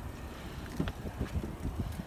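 Rear door of a Porsche Cayenne unlatched and swung open: a light click a little under a second in, then soft knocks and handling noise, with wind on the microphone.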